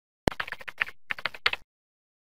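Computer-keyboard typing clicks: one sharp keystroke about a quarter second in, then a quick run of keystrokes for over a second that cuts off suddenly. Laid over the animated outro text as a sound effect.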